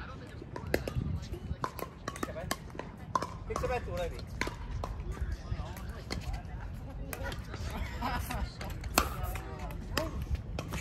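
Pickleball rally: sharp, irregular pops of paddles striking the plastic ball and the ball bouncing on the hard court, the loudest about one second in and near the end, over voices and a low rumble.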